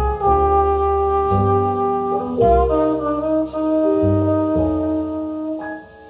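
Instrumental passage of a recorded song played over a pair of MarkGo Gravity coaxial 12-inch loudspeakers: a melody of held notes over bass, heard as it fills the listening room. The music dips briefly just before the end.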